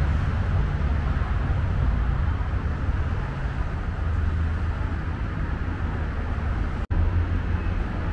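Steady low rumble of outdoor city background noise, a mix of distant traffic and wind on the microphone, which cuts out for an instant about seven seconds in.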